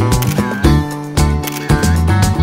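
Background music with a steady beat and sharp percussive clicks.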